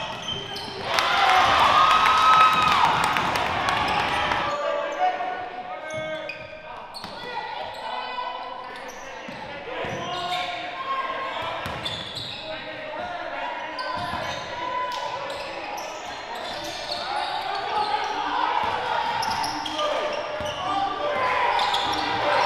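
Live gym sound at a basketball game: a loud burst of shouting and cheering about a second in, then indistinct voices from players and the bench, with a basketball being dribbled on the hardwood floor and echoing in the hall.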